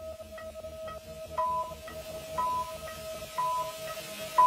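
Three short electronic beeps, one a second, over background electronic music with a steady beat: a workout interval timer counting down the last seconds of an exercise interval.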